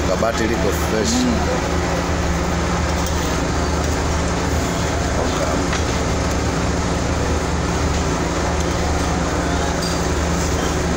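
A steady low mechanical hum under faint background voices, with a little speech in the first second or so.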